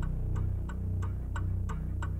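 Title-sequence music bed: evenly spaced clock-like ticks, about three a second, over a low steady drone.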